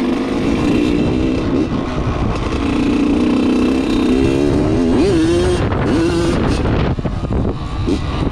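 Dirt bike engine running as the bike is ridden, its pitch rising and falling with the throttle about four to six seconds in. The engine has a freshly honed cylinder and a break-in piston.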